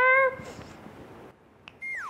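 A girl's drawn-out word trails off. After a short pause, a high electronic comedy sound-effect tone comes in near the end and begins to slide down in pitch.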